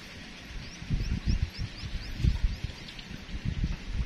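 Low, irregular rumbling and buffeting, typical of wind on the microphone. Over it, a small bird gives a quick series of faint, short rising chirps, about four or five a second, that stop about three seconds in.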